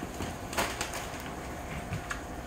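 A few light taps and clicks of things being handled and moved on a kitchen counter, over a faint steady hum.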